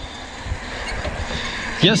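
Mountain bike rolling along a concrete sidewalk: a low, steady rumble from the tyres and bike, with a few soft low thumps about half a second and a second in.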